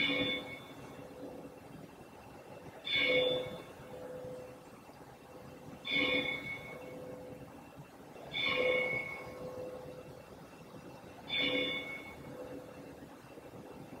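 A large church bell tolling slowly, about five strokes roughly three seconds apart, each ringing on and fading before the next.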